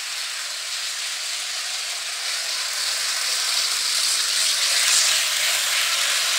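Hornby Blue Rapier (Class 395) OO-gauge model train running at high speed, its motor and wheels on the track making a steady, hissy rumbling noise that grows louder about four to five seconds in. The motor is working hard near the top of the controller's range, and the owner puts the rumbling down to it not yet being run in.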